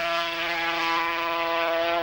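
A 250cc two-stroke racing motorcycle engine held at steady high revs, one even note that does not change in pitch.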